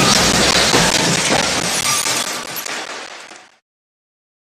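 A crashing, shattering sound effect, like breaking glass, starting suddenly and fading away until it stops about three and a half seconds in.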